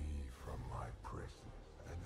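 A movie soundtrack: a deep, whispering demonic voice says "Free me from my prison" over a steady low drone.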